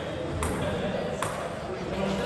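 A few sharp clicks of a table tennis ball striking table or bat, over a background murmur of voices in a large hall.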